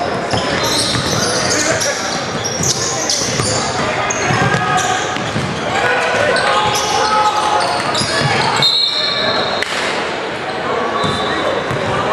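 Live basketball game in a gym: sneakers squeaking on the hardwood court, the ball bouncing, and spectators and coaches calling out throughout.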